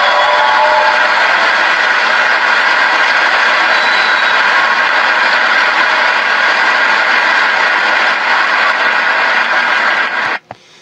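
Large audience applauding steadily, a dense even clapping that goes on without a break.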